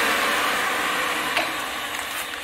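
Ridgid 300 pipe-threading power drive's electric motor running, its noise slowly fading, with one sharp metallic click a little past the middle.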